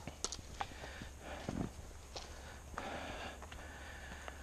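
Faint footsteps and scuffs of hikers walking a dirt forest trail, with scattered small clicks and rustles of gear.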